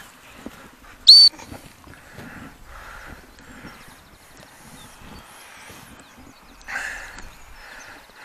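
A gundog whistle gives one short, sharp high blast about a second in, the single-pip sit/stop command to the Labrador. Faint birdsong can be heard through the rest.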